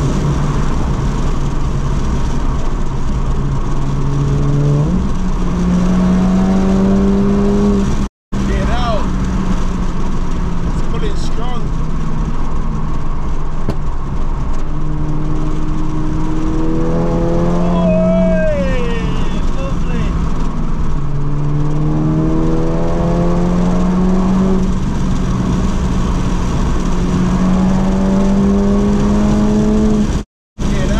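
Turbocharged 2.0-litre four-cylinder engine of a 500 bhp Mk7 Golf GTI under hard acceleration, its pitch climbing in several runs and dropping back between them as it goes up through the gears, over heavy road noise. The sound cuts out briefly about eight seconds in.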